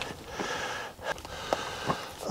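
A man breathing close to the microphone during a pause in speech, followed by a few faint sharp clicks in the second half.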